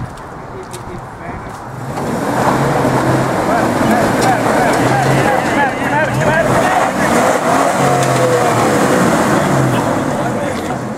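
Second-generation Nissan Xterra's V6 engine revving hard under load as the SUV climbs a rock ledge. It starts about two seconds in and holds loud, with tires working over the rock.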